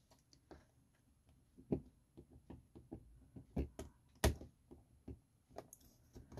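Scattered small taps and clicks of a Cricut hook tool working a small sublimated insert loose on a tabletop, irregular and light, with one sharper knock about four seconds in.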